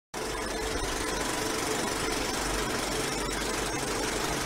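Film projector running: a steady mechanical whirr with a faint held tone through it.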